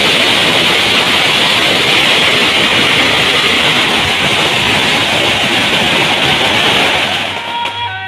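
A long string of firecrackers going off in one continuous rapid crackle, dying away about seven seconds in.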